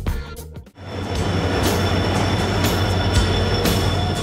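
Passenger train moving through a station, a steady rumble of the coaches with a thin, steady high squeal from the wheels, starting about a second in after a brief drop, with background music.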